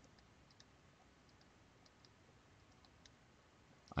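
Near silence with faint, irregular light clicks from a stylus tapping on a pen tablet as words are handwritten.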